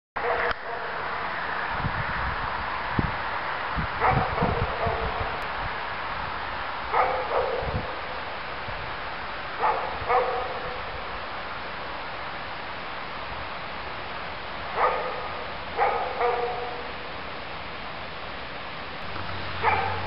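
A dog barking in short calls, often two at a time, every few seconds, over a steady hiss, with a few low thumps in the first seconds.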